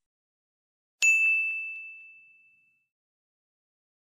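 A single bright ding, a sound-effect chime, struck about a second in and ringing out over about two seconds. It cues the learner's turn to repeat the phrase aloud.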